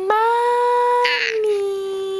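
Baby cooing: one long, drawn-out vowel that rises, holds steady, then slides down a little in pitch near the end.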